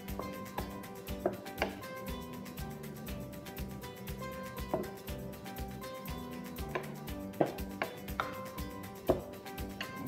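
Background music with a steady beat, over a wooden spoon knocking and scraping against an enamelled pan as a rice and meat mixture is stirred, with irregular knocks, the loudest in the second half.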